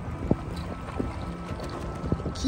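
Wind buffeting the microphone and the sea washing along a concrete seawall, a steady low rumble with a couple of faint ticks.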